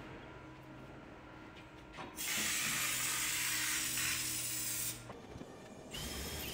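Air-powered undercoating spray gun applying rubberised coating: one steady hiss lasting about three seconds, starting about two seconds in and cutting off sharply.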